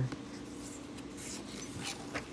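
A page of a large picture book being turned by hand: soft paper rustling and fingers rubbing across the page, loudest just before the end.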